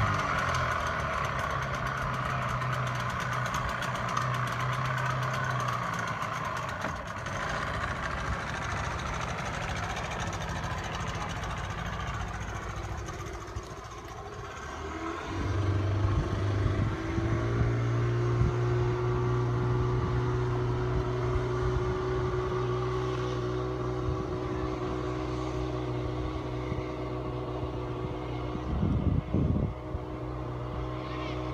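Outboard motor running as a small boat pulls away, a steady engine note that dips around halfway, then comes back louder and holds steady once the boat is under way. A brief rough thump near the end.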